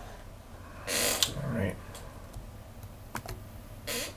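A man's breathy exhale and a short low hum about a second in, then a few faint sharp clicks near the end.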